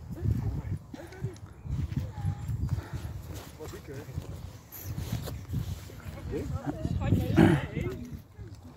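Indistinct voices of adults and children, not clear enough to be words, over irregular low rumbling on the microphone. A louder short voiced call comes near the end.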